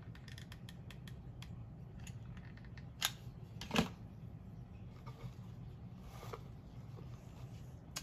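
Small clicks and handling noises from hands working a hot glue gun and pushing a decorative mushroom pick into a box arrangement, with two sharper knocks about three and four seconds in, over a low steady hum.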